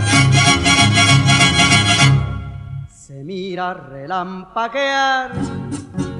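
Mariachi band recording playing a fast strummed rhythm. About two seconds in, the band breaks off into a slow, wavering melodic phrase, and the full band comes back in just before the end.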